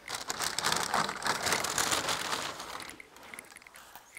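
Plastic bag crinkling and rustling as it is handled, a dense crackle lasting about three seconds that fades out toward the end.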